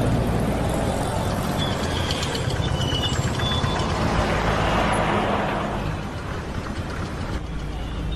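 Busy city road traffic: a steady din of buses, trucks, auto-rickshaws and motorbikes running, with a few short high beeps a couple of seconds in.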